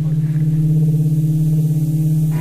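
Cello holding one low bowed note, steady and sustained like a drone.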